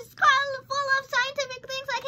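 A young girl's high voice in a sing-song chant, syllables held near one pitch with no clear words.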